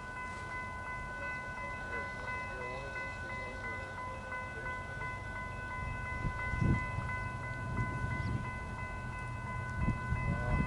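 Distant BNSF intermodal freight train approaching at speed: a low rumble that grows louder from about six seconds in, under a steady high ringing of several tones.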